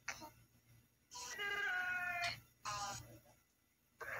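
A drawn-out, meow-like wail lasting about a second and falling slightly in pitch, followed by a shorter one.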